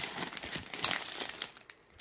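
Clear plastic bag crinkling as it is handled and lifted out of a box, a run of irregular crackles that dies away near the end.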